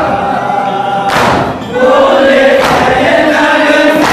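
Men chanting a noha in chorus, led by one voice at a microphone, while they strike their chests together in matam. The unison chest-beats land about every second and a half, twice here, the first about a second in.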